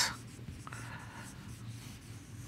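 Marker pen writing on a whiteboard: faint strokes as a word is written.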